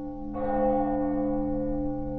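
A deep bell ringing, struck again about a third of a second in with a brighter ring, then holding and slowly fading.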